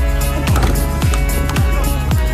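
Background music with a steady beat of deep drum hits, about two a second, over held tones.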